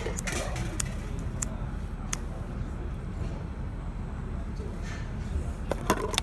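Steady low rumble of outdoor city background noise, with a few faint sharp clicks in the first two seconds and a quick cluster of clicks near the end.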